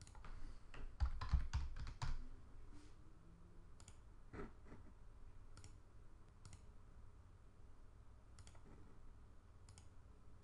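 Faint computer keyboard typing: a quick run of keystrokes about a second in, as a short word is typed, followed by a few scattered single mouse clicks.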